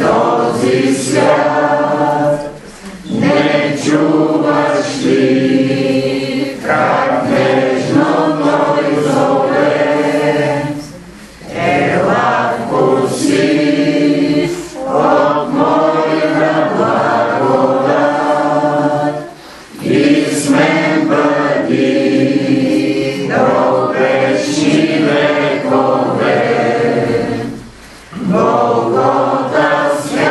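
A group of voices singing a hymn together in long phrases, with brief breaks about every eight seconds.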